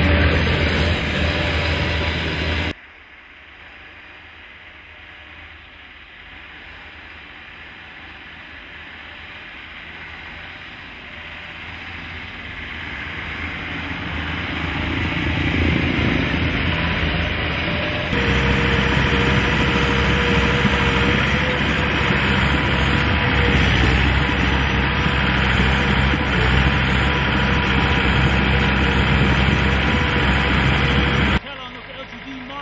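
ALLTRACK rubber-tracked carrier's engine and tracks running over snow. It starts loud and close, drops suddenly about three seconds in to a distant run that grows louder as the machine approaches, then jumps back to a loud, steady close-up of the engine and tracks about eighteen seconds in.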